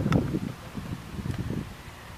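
Wind buffeting the microphone: an irregular low rumble, strongest in the first half second and easing off after.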